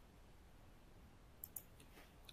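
Near silence: faint room tone with two or three brief, faint clicks about one and a half seconds in.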